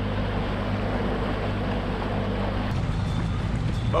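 Bass boat's outboard motor running slowly with a steady low hum and water wash, changing abruptly to a rougher low rumble near the end.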